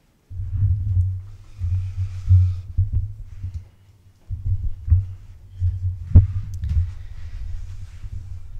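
Microphone handling noise: a deep rumble with repeated thumps as the microphone and its stand are gripped and moved, pausing briefly about halfway through, with a sharp knock a little after six seconds.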